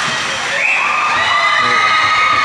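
Hockey spectators cheering and shouting a goal, several high-pitched voices yelling at once, swelling about half a second in and held.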